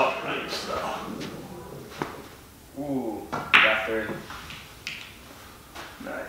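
Sharp isolated clicks of a cue tip and pool balls striking one another on a pool table during a shot, a handful spread over a few seconds. Voices in the room in the middle are louder than the clicks.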